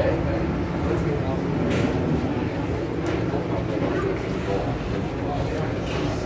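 Interior of a Kawasaki–CRRC Qingdao Sifang CT251 metro train running through a tunnel: steady rumble of wheels on rail with a low steady hum from the train, under passengers' chatter.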